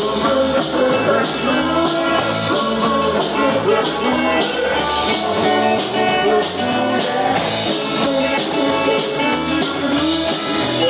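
A live rock band playing: electric guitar through an amplifier over a steady drum beat, about two beats a second.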